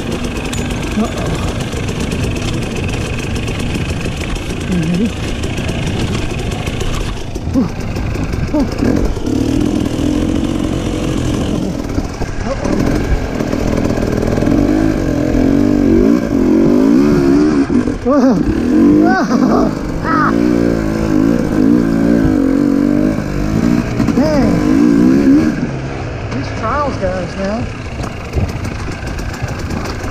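Dirt bike engine ridden on a trail, its pitch rising and falling as the throttle is worked. It runs hardest and loudest through the middle stretch, on the uphill climb.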